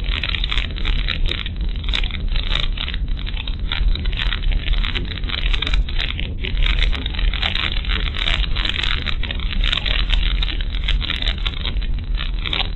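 Car driving on a rough, narrow road, heard from inside the cabin: a steady low rumble of engine and tyres with frequent small rattles and knocks.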